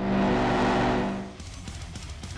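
Television static hiss over a steady low hum, an intro transition effect, lasting about a second and a half before dropping away.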